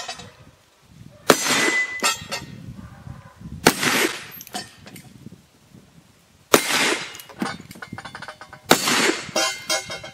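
Four shots from black-powder percussion revolvers, spaced two to three seconds apart. Each shot is followed by about a second of metallic clanging and rattling as a hit knock-down plate target falls over.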